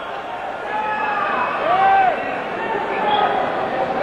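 Arena crowd noise: a dense wash of many voices, with single shouts calling out above it, one clear call near the middle.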